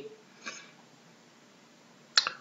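A man's short, faint intake of breath about half a second in, then near silence: quiet room tone.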